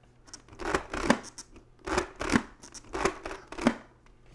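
Clear visor of a TORC T14 full-face motorcycle helmet being worked open and shut by hand, its pivot clicking through the detent steps in three quick runs of clicks.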